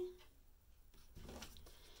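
Near-quiet room with a faint soft rustle about a second in: an oracle card being laid down on a paper-covered table.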